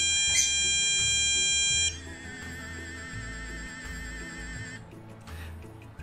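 Electronic alarm tone from a PetKing Premium anti-bark collar. It sounds steadily at first and cuts off abruptly about two seconds in, then continues as a quieter warbling tone until about five seconds. The collar triggers this alarm when it detects loud vocalising at the throat, in this case a person's voice rather than a dog's bark.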